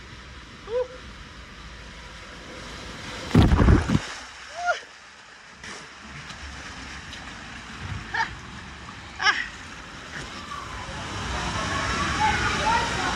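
A rider sliding feet-first down a water slide, with water rushing and sloshing underneath. About three and a half seconds in there is a loud burst of rushing noise, and splashing noise builds near the end as the slide runs out into the pool.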